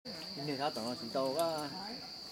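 A steady, high-pitched insect drone that holds one even tone without a break, under a person's voice.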